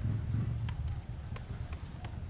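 Low steady rumble of outdoor background noise with a few light, sharp clicks scattered through it.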